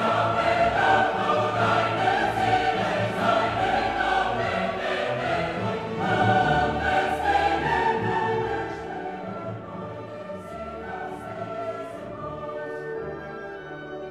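Recorded orchestral classical music, full and loud at first, then thinning to a quieter passage about two-thirds of the way through.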